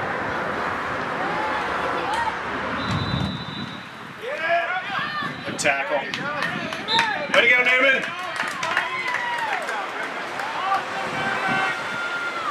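Spectators and coaches on the sideline of a youth football game shouting and cheering during a play, many voices overlapping. The shouting picks up about four seconds in.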